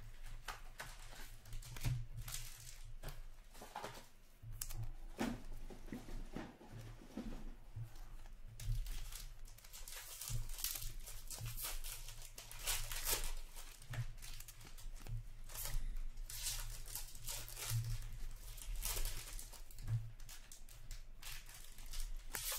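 Hockey card packs being torn open and the cards handled: irregular bursts of wrapper tearing and crinkling and cards rustling, over a low steady hum.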